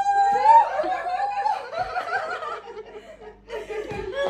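A woman laughing: a long high squeal breaks into giggling that dies away about two seconds in. A short burst of voice follows near the end.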